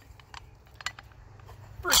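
Scattered light clicks and taps as the round lid of a buried surplus canister is handled and pulled clear of the opening. A word is spoken near the end.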